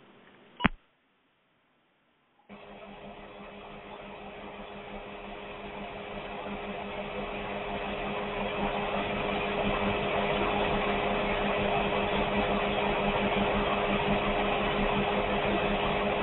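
A click, a short dead silence, then a lot of noise on a caller's line: a steady hum with a machine-like rush that grows louder over several seconds and then holds, heard through narrow phone-quality audio.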